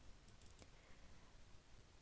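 Near silence: room tone, with a few faint computer mouse clicks about half a second in.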